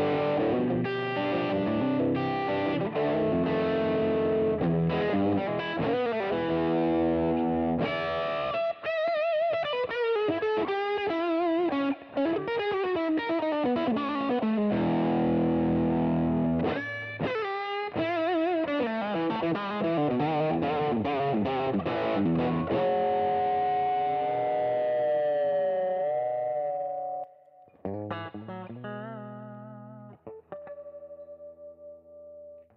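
Gibson ES-335 semi-hollow electric guitar on its bridge humbucker, played through an amplifier: chords and single-note blues licks with vibrato and string bends. Late on, a held note wavers and fades, then a few more notes are picked.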